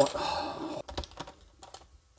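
Light plastic clicks and knocks from the hard plastic parts of a Hasbro Transformers Ultimate X-Spanse figure being handled and set into a standing pose, busiest in the first second and thinning out after.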